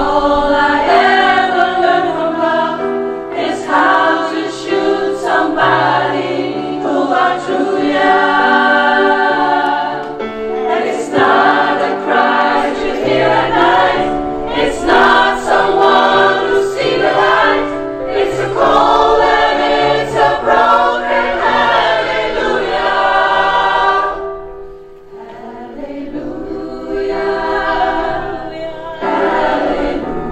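A choir of mostly women's voices singing a song. The singing falls away briefly about three-quarters of the way through, then comes back more softly.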